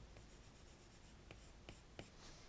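Apple Pencil tip stroking quickly back and forth on the iPad's glass screen, a faint rapid scratching for under a second, followed by a few light taps.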